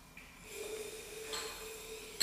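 A piece of sodium reacting on water in a glass conical flask, giving off hydrogen: a faint steady fizzing and hissing starts about half a second in and grows louder just past the middle.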